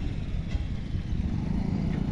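Steady low outdoor rumble with no distinct event.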